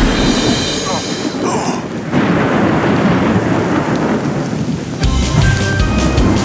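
Thunder rumbling over steady heavy rain, a storm sound effect. About five seconds in the rain gives way to other sounds, with sharp ticks and steady tones.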